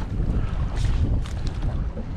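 Wind buffeting the microphone over open, choppy water, an uneven low rumble, with a couple of brief faint hissing streaks near the middle.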